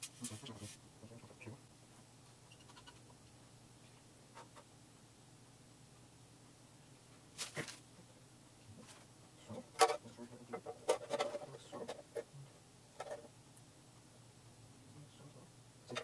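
Scattered small clicks and knocks from a hard drive enclosure being handled and screwed together, busiest from about ten to twelve seconds in, over a steady low hum.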